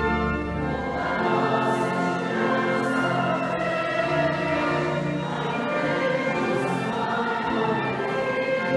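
Church choir singing a Marian hymn in sustained chords, with instrumental accompaniment.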